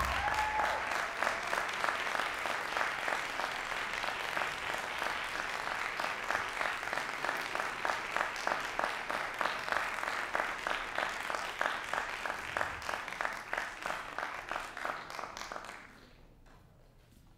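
Audience applauding in a theatre. The clapping thins into more distinct individual claps and dies away near the end.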